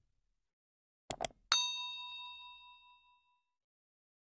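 Two quick mouse-click sound effects about a second in, followed at once by a single bright bell ding that rings out and fades over about two seconds: the notification-bell chime of a subscribe animation.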